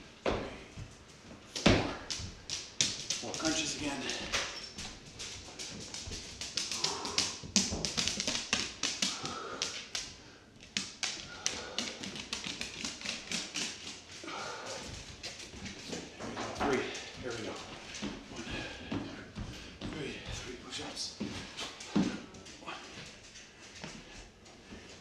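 Rapid taps and clicks on a hardwood floor, with a few louder thumps, from a person doing jumping jacks and floor exercises while a dog walks across the floor.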